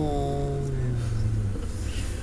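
A tabby cat's long, low, drawn-out yowl that slowly falls in pitch and ends about one and a half seconds in.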